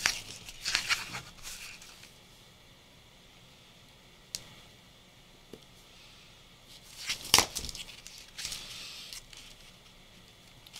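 Scissors snipping through paper, with paper rustling as it is handled. The sharpest, loudest snip comes about seven seconds in, after a quiet stretch.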